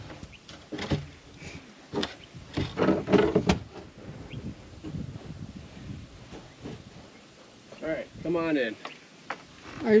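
Old weathered plank door of a dugout knocking and scraping as it is handled, with a cluster of sharp knocks a few seconds in. A brief voice is heard near the end.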